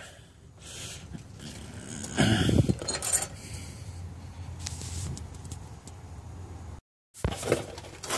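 Handling sounds while working under a vehicle: rustling and scattered light clinks and knocks of tools and parts, louder about two seconds in, over a faint low hum. The sound cuts out briefly near the end.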